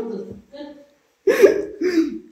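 Short bursts of people laughing, with a silent pause of about a second in the middle.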